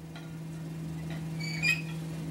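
Quiet room tone under a steady low electrical hum on the recording, with a brief faint high-pitched chirp near the end.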